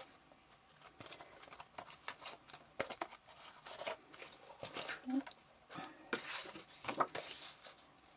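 Paper and card being handled: soft rustles and scattered light clicks and taps as a spiral-bound notebook with a kraft card cover is picked up, turned and set down on a cutting mat.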